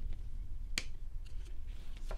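A magnet-backed calendar piece snapping onto the magnet of a wooden sign panel: one sharp click just before a second in.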